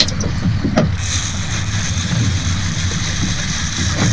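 Outboard motor running steadily underneath, with a couple of knocks in the first second. About a second in, a high steady whine starts and carries on: the drag of a Daiwa Saltist 4500 fishing reel giving line to a hooked fish.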